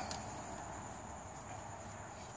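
Quiet, steady background with a faint, continuous high-pitched whine and no distinct knocks or clicks.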